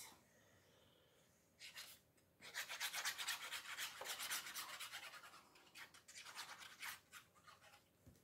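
Fine tip of a squeeze glue bottle rubbing and scratching along a strip of card stock as glue is laid on: a brief scratch about a second and a half in, then a quick run of faint scratchy strokes that fades out near the end.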